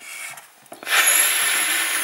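Dry-erase marker scraping across a small whiteboard slate while a letter F is written: a short, faint stroke at the start, then a louder, longer scrape with a thin high squeak from about a second in.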